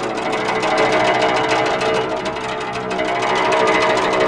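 Guzheng solo: a fast, dense run of plucked notes, many strings ringing on over one another.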